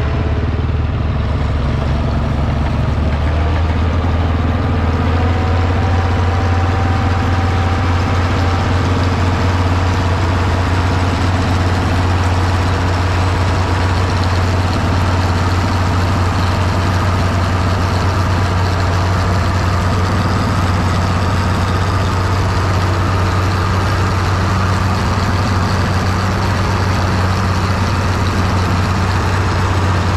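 International 1256 tractor's diesel engine running steadily at an even speed, with a strong low hum.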